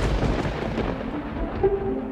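A sudden boom sound effect at the start, trailing off into a rumble that fades away over about a second and a half.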